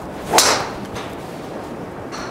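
TaylorMade Qi10 MAX driver swung and striking a teed golf ball, a single sharp crack about a third of a second in.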